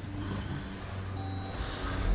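2016 Jeep Grand Cherokee being push-button started: a steady low hum in the cabin, a short electronic chime tone a little past a second in, and the engine beginning to turn over at the very end.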